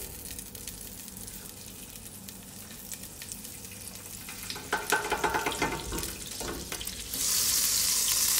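Butter melting and sizzling in hot olive oil in a pot, faint at first. From about five seconds in there is some scraping as a spatula moves the butter, and about seven seconds in the sizzle suddenly grows to a loud, steady hiss.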